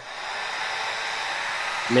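Toy fingernail dryer's small fan coming on and running steadily, an even hiss of blowing air drying wet nail polish.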